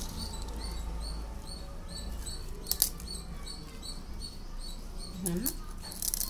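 Scissors cutting into a large fish, with one sharp snip about three seconds in and another near the end. Behind it, a steady series of high chirps repeats about three times a second.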